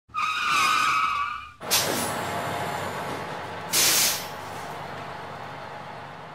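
Vehicle sound effects: a wavering tyre squeal, then a sudden rushing whoosh that falls in pitch and settles into a steady rumble, with a short hiss like air brakes about four seconds in.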